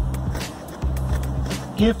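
A thick meat-cleaver knife scraping down a stick of Chinese elm in a few short shaving strokes, carving a fuzz stick, over background music with a steady bass line.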